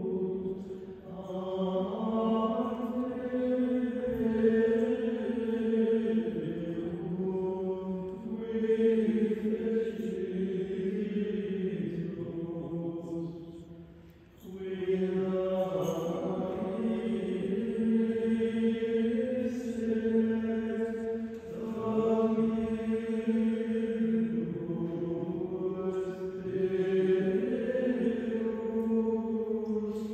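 Choir of monks' male voices chanting a slow liturgical chant in long held phrases, with a breath break about halfway through.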